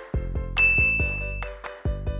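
Upbeat background music with a steady beat, and a single bright ding sound effect about half a second in that rings for about a second.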